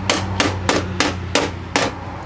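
Hammer driving a stainless steel ring nail into the drip edge: a quick, even run of about six strikes, roughly three a second.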